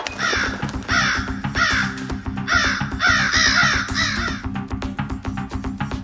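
A crow cawing about seven times in quick succession, over a steady music backing; the calls stop after about four and a half seconds.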